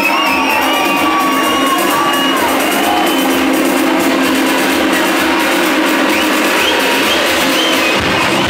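Loud electronic dance music played through a club sound system, with a steady beat and gliding high tones over it, and a crowd cheering.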